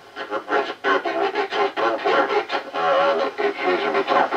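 A radio amateur's voice received over the air, coming through the loudspeaker of a homebrew octal-valve superhet communications receiver, with the thin, bass-less sound of a radio.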